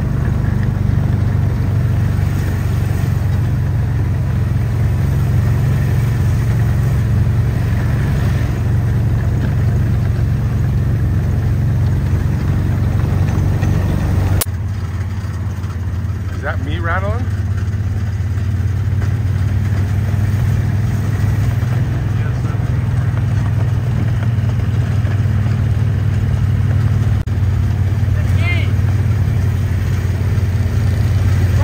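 Steady low hum of idling vehicle engines, shifting abruptly about halfway through, with a brief wavering call or whistle a couple of seconds later and another short one near the end.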